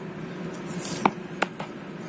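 Two light clicks from handling a cardboard product box and its lid, about a second in and again shortly after, over a faint steady background hum.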